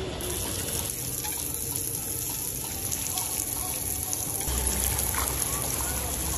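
Swimming-pool water sloshing and trickling, a steady wash of moving water that grows fuller about halfway through.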